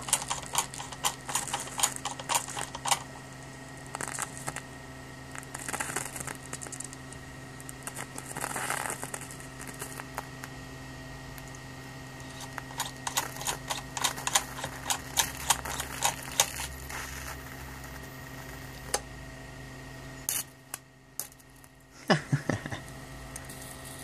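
High-voltage arc from a ZVS-driven flyback transformer burning through a light bulb's broken glass to the filament: irregular crackling snaps over a steady electrical hum. The sound drops out briefly about twenty seconds in, and a short laugh follows near the end.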